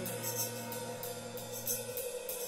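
Improvised lo-fi rock band jam: drum kit cymbals struck in a steady rhythm over a held low bass note that stops near the end.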